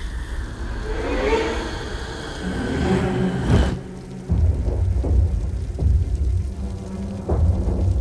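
Dramatic film score: a rising swell that cuts off suddenly about three and a half seconds in, then after a short drop a run of deep, heavy drum hits.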